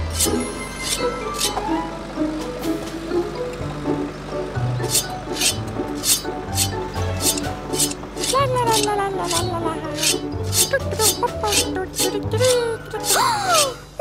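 Cartoon background music with a steady bass beat, joined about five seconds in by a quick run of sharp, evenly spaced clicks, about three a second. Near the end, high cartoon voice sounds slide down and up in pitch over the music.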